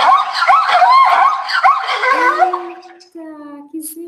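Zebra calling: a fast run of high, yelping barks that fades out about two and a half seconds in.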